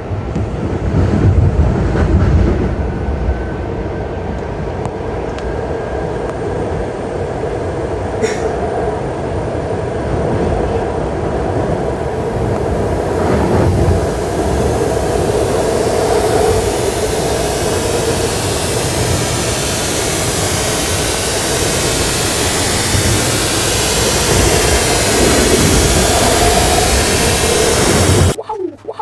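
A train running along the track, heard from inside the car: a steady rumble of wheels and carriage, with a harsher hiss building from about halfway through.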